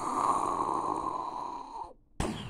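A long rushing whoosh, a portal sound effect, fading away over about two seconds.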